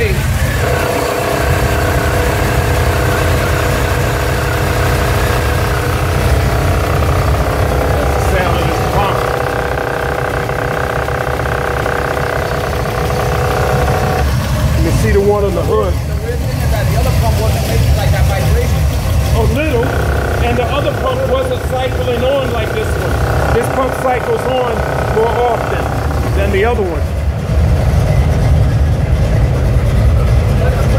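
Buick 455 V8 idling steadily. For long stretches a steady higher-pitched hum sits over the low engine sound.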